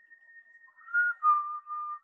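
A person whistling a few short notes, starting about a second in, the first higher and the later ones a little lower and held, over a faint steady high-pitched whine.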